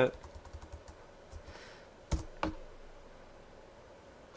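Typing on a computer keyboard: a quick run of light keystrokes in the first second, then two sharper, louder key clicks about two seconds in.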